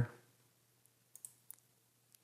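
A few faint computer mouse clicks against near silence: two close together a little past a second in, and a third shortly after.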